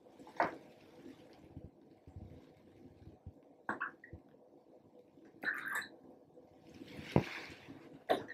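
Soda being poured in small splashes from a plastic cup into plastic cups of water, with light knocks of the cups on the table. The longest pour comes near the end and lasts under a second.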